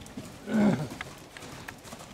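A horse gives a single short grunt with a falling pitch as it jumps a fence, about half a second in. A few dull hoof thuds follow.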